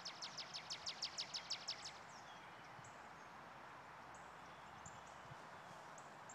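A bird's rapid trill of evenly spaced high notes, about seven a second, that stops about two seconds in. After it come faint, scattered high chirps over quiet outdoor ambience.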